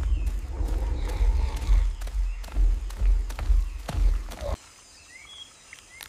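Forest ambience: a low rumble with scattered rustles and knocks, which cuts off after about four and a half seconds. A quieter background follows, with a few brief bird chirps.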